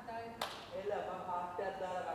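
A person's voice, with one sharp click or clap about half a second in.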